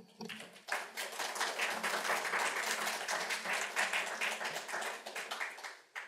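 Audience applauding, starting about half a second in and dying away just before the end.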